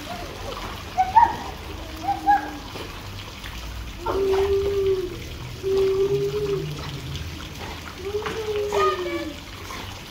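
Pool water splashing and sloshing as children and a dog swim, over the steady trickle of the pool's water jet. A person's voice gives two short high wordless calls in the first couple of seconds, then three long held tones of about a second each.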